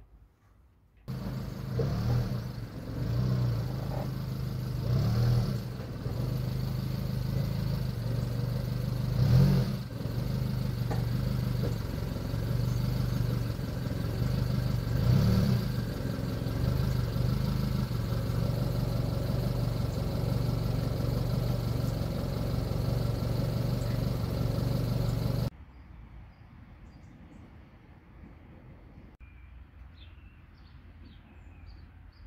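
A motor vehicle engine running steadily, its pitch rising and falling briefly several times as if revved. It starts abruptly about a second in and cuts off suddenly a few seconds before the end.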